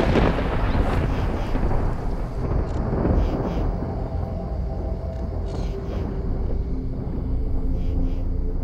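A long roll of thunder, loudest at the start and rumbling on with further rolls as it slowly fades.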